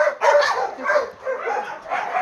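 Dogs barking and yipping in a run of short, pitched calls.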